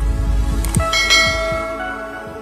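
Logo intro sting: a deep sustained bass with sharp clicking effects, then bell-like chime tones ringing out from just under a second in and slowly fading.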